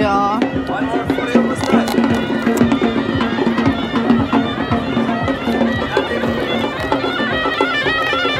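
Moroccan street music of the kind played for snake charmers: a reed pipe plays a bending melody over a steady low drone, with frequent hand-drum beats.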